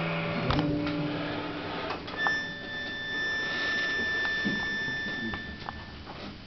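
The final chord of an accordion and acoustic guitar duo rings out and fades away within about the first second. The room then goes hushed, with a faint steady high-pitched tone from about two seconds in until near the end.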